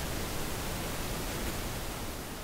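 Steady hiss of the recording's background noise, with no other sound.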